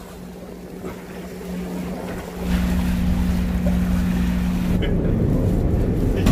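Boat engine running with a steady low hum, growing clearly louder about two and a half seconds in.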